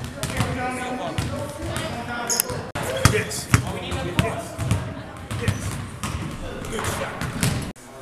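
Basketballs bouncing on a hardwood gym floor in irregular thumps, with voices talking over them.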